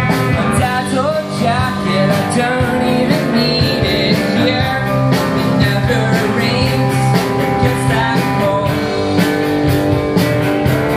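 Rock band playing live: two electric guitars over a drum kit, at a steady, loud level.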